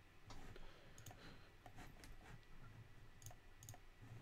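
Faint, irregular clicking of a computer mouse, with two sharper clicks near the end.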